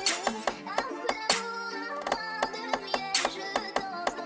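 UK drill beat playing back in FL Studio: a sampled guitar-like melody with a counter-snare pattern and a snare pattern, the snare hitting hardest at the start, about a second in and near the end.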